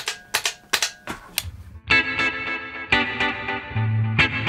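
Electric guitar played through the NUX MG30's dub patch, which is a clean tone with dotted-eighth delay and extra reverb. It opens with a few short, percussive muted strokes about a third of a second apart. About two seconds in, chords start ringing out, struck again near three and four seconds, with delay and reverb trailing each one.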